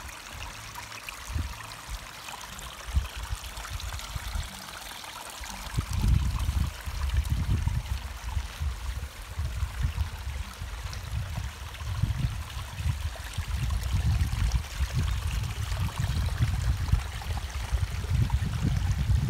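Water trickling and splashing over the ragstone falls of a newly built, pump-fed pondless garden stream, a steady wash of sound. From about six seconds in, an uneven low rumble comes and goes under it.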